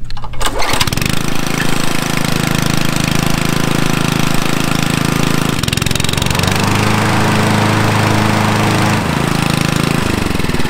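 Honda gas walk-behind mower's single-cylinder four-stroke engine pull-started, catching within a second, then running steadily and loudly. Its engine note changes about six seconds in and again near the end.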